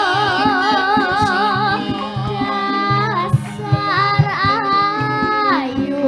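A girl sinden, a Javanese female vocalist, sings into a microphone over gamelan accompaniment with percussive strokes. She holds a long wavering note for the first couple of seconds, then sings a new phrase that ends in a falling slide near the end.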